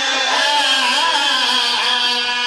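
A man's voice in a sung, chanted recitation, holding long notes that waver up and down in pitch.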